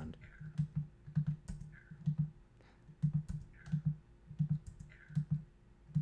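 Short, clipped fragments of a recorded voice heard in an uneven string of brief blips, about two a second, as an Adobe Flash timeline with an audio layer is stepped through frame by frame. Light clicks come with the blips, and a faint steady hum lies underneath.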